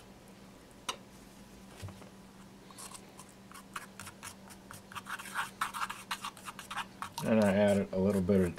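A small brush scraping and stirring Durham's Rock Hard Water Putty powder and water in a small ceramic mixing dish. It starts as a few light clicks, then from about three seconds in becomes a rapid run of scratchy strokes as the lumpy mix is worked. A man's voice comes in near the end.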